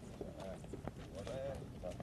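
Faint voices of people talking at a distance, with a few light sharp clicks among them.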